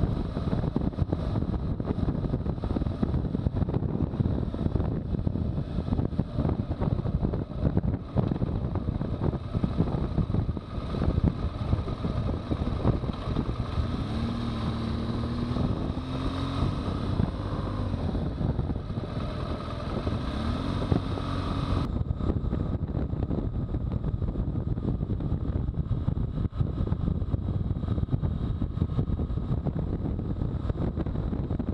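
Wind buffeting the microphone of a camera on a moving BMW R1200GS, with its boxer twin engine running underneath. In the middle the engine note rises and falls several times as the bike slows for a turn and pulls away, and the sound changes abruptly about two-thirds of the way through.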